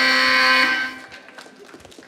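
Game-show buzzer sounding a steady, harsh electronic tone that steps up slightly in pitch and cuts off just under a second in. It signals that the contestant's time on stage is up.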